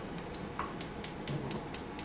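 Gas range's spark igniter ticking rapidly, about four clicks a second, as the wok burner is lit.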